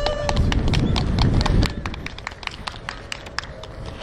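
Scattered applause from a small gallery of spectators: individual, uneven claps that thin out over the last second or two.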